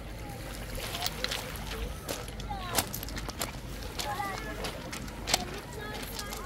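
Footsteps crunching on pebbles as people walk along a pebble shore, in irregular short crunches, with faint voices of people around in the background.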